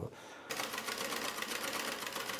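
Old sewing machine running steadily, its needle stitching rapidly through a sheet of paper to punch a line of holes. It starts about half a second in.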